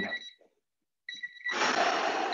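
Electronic workout interval timer beeping, a steady high tone, signalling the end of the timed set. The beep stops just after the start and sounds again about a second in. About a second and a half in, a loud rush of noise covers it.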